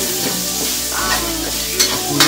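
Chopped aromatics sizzling in hot oil in a stainless steel wok, with a spatula scraping and tapping the pan as they are stirred; sharper scrapes stand out about one second in and again near the end.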